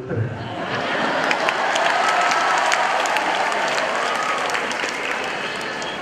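Audience applauding: many hands clapping, building up over the first second and then holding steady.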